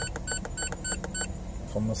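Key beeps from an OTC Genesis EVO scan tool as its scroll button is pressed repeatedly: a quick run of about five short, identical beeps in the first second or so, then one more near the end. A low steady hum from the idling engine runs underneath.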